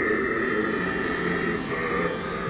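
Orchestral music from the opera-pastiche score, holding sustained chords between sung lines.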